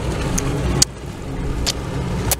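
Steady low rumble of a pontoon boat under way, mixed with wind on the microphone, with a few short sharp clicks. The level drops suddenly a little under a second in.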